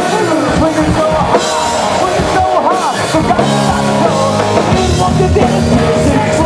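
Live hard-rock band playing: electric guitar over bass and a drum kit, loud and continuous.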